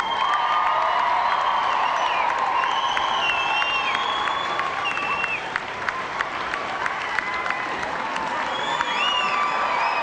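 A large crowd cheering and applauding in welcome, with scattered claps and high gliding whistles over the steady roar.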